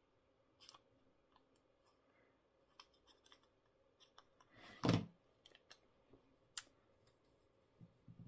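Paper-craft handling: scattered soft clicks and rustles as a paper doily is dabbed with glue from a fine-tip bottle and pressed onto a paper tag, with one louder thump just before five seconds in.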